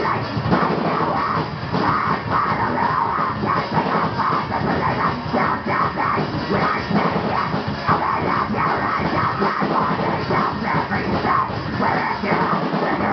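Amateur heavy metal band playing live, loud and continuous: distorted electric guitars over a pounding drum kit, picked up by a camera in the room.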